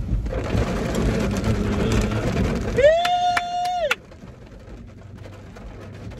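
Steady road noise inside a moving car's cabin, then one high held note about a second long, rising into it and falling away at the end. After the note the cabin goes much quieter, leaving only a low hum.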